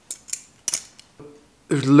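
A practice butterfly knife (balisong trainer) being flipped: about four sharp metal clicks as the handles swing and snap shut. A man starts speaking near the end.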